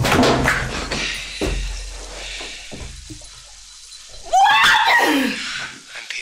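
Film sound effects of a sparking magic portal bursting open with a loud crackle, then a low rumble under fainter crackling. About four seconds in, a loud, high shriek rises and falls for about a second.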